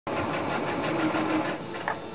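Singer electric sewing machine stitching at a steady fast rate, its needle running in a rapid, even rhythm; it gets a little quieter near the end.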